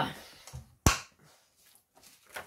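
A soft low thud, then a single sharp click or tap just under a second in.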